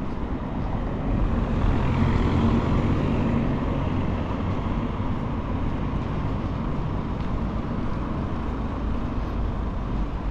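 Road traffic on a city street: cars and a pickup towing a trailer drive past, giving a steady wash of tyre and engine noise. The noise swells about two seconds in.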